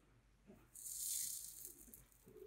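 Flux sizzling as a hot soldering iron is held on a fluxed wire and crimp terminal: a hiss of about a second that begins partway in and fades toward the end.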